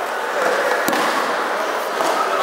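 Steady background hubbub of many voices in a large, echoing training hall, with a single sharp slap or crack about a second in.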